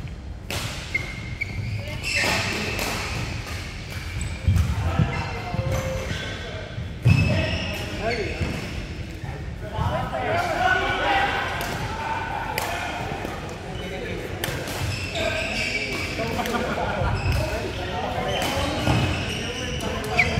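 Badminton play in a large indoor hall: sharp, irregular knocks of rackets striking shuttlecocks, mixed with thuds of players' footwork on the court.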